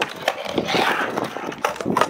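Skateboard on concrete: wheels rolling and scraping over the coping of a concrete wave, then several sharp clacks of the board in the last second.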